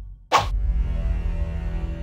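A short, sharp editing transition sound effect about a third of a second in, after the music drops away, followed by steady low trailer music with held tones.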